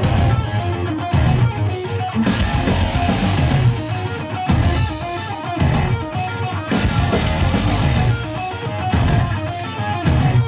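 Heavy metal band playing live through a PA: distorted electric guitars, bass and drum kit, with crash cymbal hits about once a second, and no vocals.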